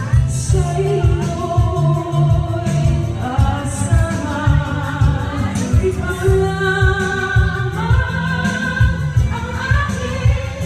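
A woman sings a Tagalog ballad into a microphone over a backing track with a steady beat, holding longer notes in the second half.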